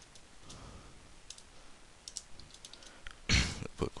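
A computer keyboard being typed on, a few scattered key clicks spaced out, with a much louder knock near the end.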